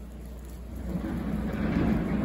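Distant earthmoving machinery running: a steady low engine rumble that grows louder about halfway through.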